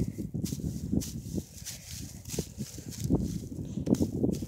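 Dry hay rustling and crunching against the phone's microphone in short irregular crackles and knocks as the camera is pushed and dragged over a hay bale.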